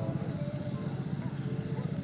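An engine running steadily, a low hum with a fast, even pulse.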